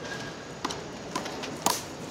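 Rubber handball being hit by hand and smacking off a concrete wall and court: three sharp slaps about half a second apart, the last the loudest.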